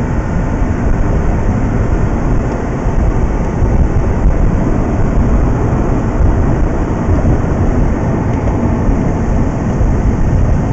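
Steady in-cabin driving noise of a Mazda RX-8 at road speed: a continuous low rumble of tyres, road and engine with no distinct engine note.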